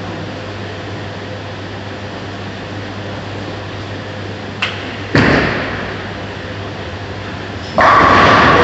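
A bowling ball released onto a lane: a loud thud as it lands about five seconds in, fading into its roll over the next second or so, over the steady hum of a bowling alley. Just before the end a sudden loud, sustained noise begins.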